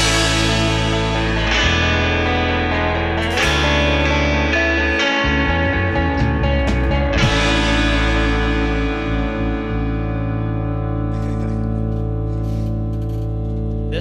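A band's electric guitars and bass guitar strike big chords together about three and a half seconds apart as a song ends. The last chord, hit about seven seconds in, is left ringing and slowly fading.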